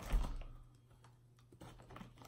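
Thin plastic marshmallow bag crinkling and crackling as a hand rummages inside it for a marshmallow. It is loudest right at the start, quieter in the middle, then picks up again as short crackles near the end.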